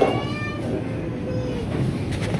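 Steady low rumble of supermarket background noise, with a brief high-pitched squeal at the start and a fainter, lower squeal about a second and a half in.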